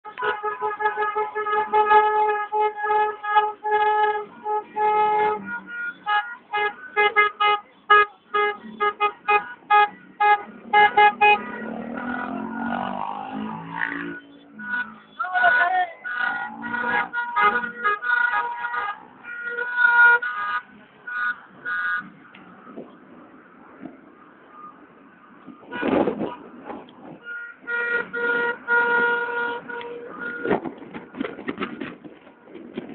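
Car horns honking over and over in celebration, first in quick rhythmic runs of short blasts, then in longer held blasts, with a sudden loud burst of noise late on.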